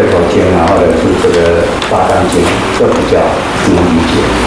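Only speech: a man lecturing in Chinese through a microphone.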